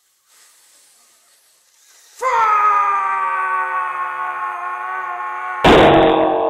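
A drawn-out "FFFFUUUU" rage yell: a faint hiss for about two seconds, then a loud held "UUUU" that sinks slightly in pitch. Near the end a sudden loud crash cuts in.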